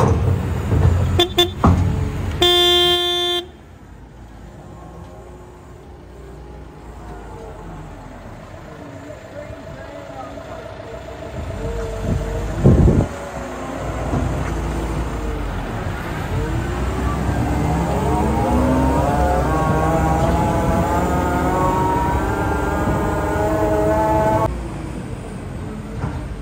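A vehicle horn gives one short toot about three seconds in. Then a John Deere tractor's diesel engine runs and revs, with a sharp thud midway, growing louder with its pitch rising and falling as it drives off, and dropping away near the end.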